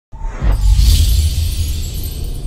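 Logo intro music sting: a deep bass swell with a bright, high swish over it, coming in just after the start and thinning out toward the end.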